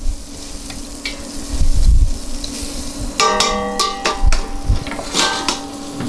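Butter sizzling in a hot stainless-steel pan, steady throughout, with a few low knocks and a brief metallic ring about three seconds in.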